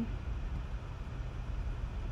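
Steady low background rumble and faint hiss with no distinct events: the room tone of a home voice-over recording.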